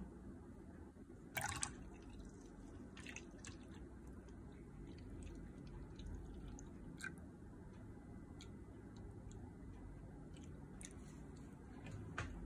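Faint pouring of melted shea, mango and cocoa butter with almond oil from a glass beaker into a bowl of liquid, with a few small drips and ticks. A sharper click comes about a second and a half in.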